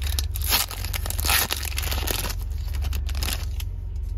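A foil Pokémon trading-card booster pack being torn open by hand. There are sharp rips about half a second and a second and a half in, then crinkling of the wrapper that dies down near the end.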